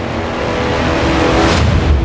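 Film-trailer sound effects: a deep rumble under a rising whoosh that swells to a loud peak near the end.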